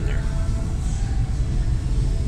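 Steady low background rumble at an even level, with a faint steady hum above it.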